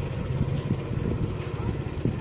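A motorbike's engine running at low speed, heard from the rider's seat as a steady low-pitched drone with some road and wind noise.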